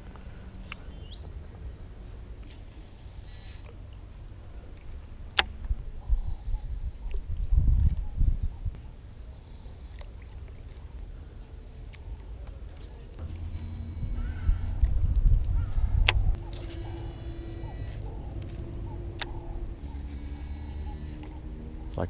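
A spinning rod and reel being fished from a boat: a few sharp clicks, and stretches of quick, regular reel winding in the second half. Underneath runs a low rumble that swells twice.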